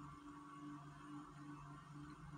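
Near silence: a faint, steady hum of room tone.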